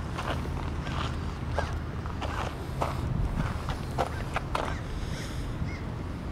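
Footsteps on gravel at a steady walking pace, a step about every half second, over a low steady rumble.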